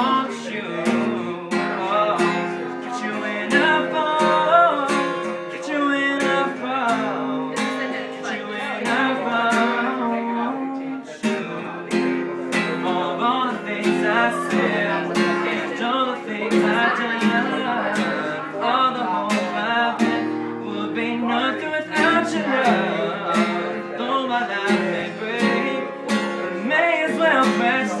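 Acoustic guitar strummed in a steady rhythm, with a man singing along.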